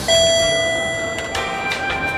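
A single elevator arrival chime: one bell-like ding that rings and fades over about a second. Soft music comes in after it.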